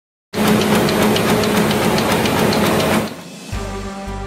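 Opening sting of a TV newscast: a loud, dense, rapidly ticking noise over a low hum, cutting off about three seconds in. Theme music with a pulsing bass starts just after.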